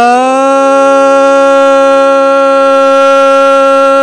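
Young male Carnatic vocalist holding one long, steady note in raga Kalyani, settling onto the pitch in the first moment after a gliding descent, over a faint steady sruti drone.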